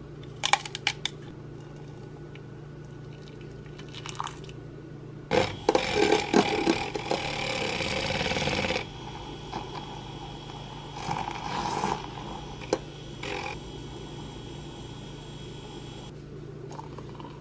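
A paper coffee sachet crackles briefly near the start. Then a small battery-powered handheld milk frother whirs in a mug of milk, loudest and splashiest for about three seconds near the middle, then running on more quietly.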